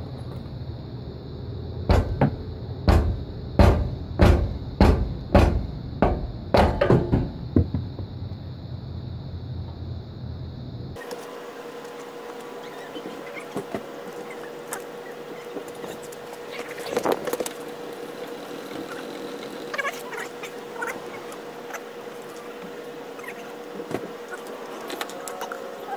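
About ten hammer blows in quick succession, roughly two a second, on the bolt of a boat trailer's bow stop. After a cut, only scattered light knocks and clicks over a faint steady hum.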